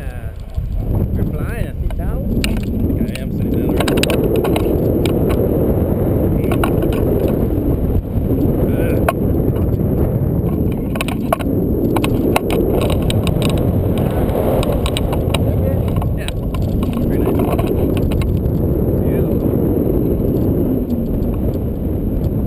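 Wind rushing and buffeting over a pole-mounted action camera's microphone as a tandem paraglider lifts off and flies, a loud low rumble that swells and eases every few seconds, with scattered clicks and rattles from the pole and harness.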